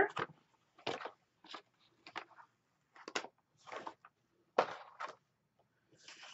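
Paper and sticker sheets being handled: about seven short, separate rustles and swishes as sheets are slid and flipped over.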